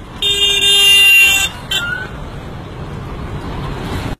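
Bullet train horn: one loud blast of a bit over a second that cuts off sharply, then a short second toot, followed by a steady low rushing rumble.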